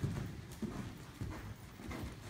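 Horse's hoofbeats on the soft sand footing of an indoor arena, a run of dull, uneven strikes as the horse moves past under a rider.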